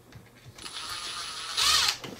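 Cordless impact screwdriver driving a screw into an RC truck chassis: its motor starts with a thin high whine about half a second in and runs steadily, turning louder near the end as the screw tightens.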